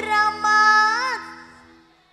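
A woman singing a long held note that bends in pitch, amplified through a microphone over sustained musical backing chords; voice and backing fade away over the second half.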